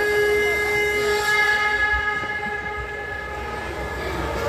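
A long, steady horn-like note with many overtones, held from the start and fading away over the next two or three seconds; new musical notes come in at the end.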